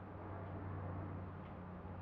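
Room tone: a faint, steady low hum with a soft hiss and no distinct events.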